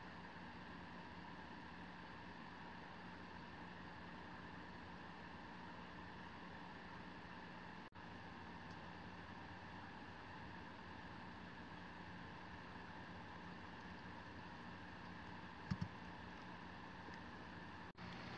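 Faint steady hiss and low hum of room tone, with a momentary dropout about eight seconds in and a quick double click near the end.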